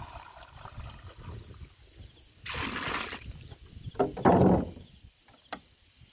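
Liquid poured from a glass jar through a strainer funnel into a sprayer tank, splashing in two short bursts, the second louder, followed by a single click.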